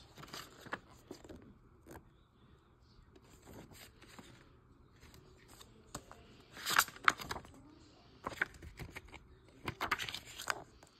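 Paper insert cards in an open plastic DVD case being flipped and handled: soft, irregular rustling and scraping, with a couple of louder crinkles about two-thirds of the way through and again near the end.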